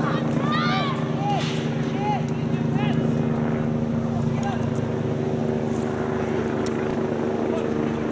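A steady, low engine drone holding one pitch, with several short, high calls over it.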